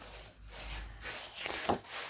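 Paper rustling as a hand slides over and turns a page of a printed catalogue, with a short sharp crinkle near the end.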